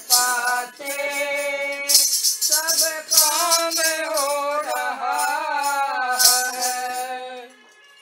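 A woman singing a devotional bhajan melody with long held and gliding notes, accompanied by a steadily shaken rattle.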